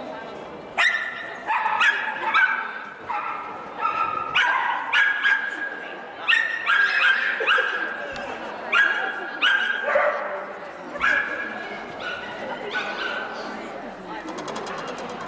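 Miniature schnauzer barking over and over in short, high yapping barks, about two a second.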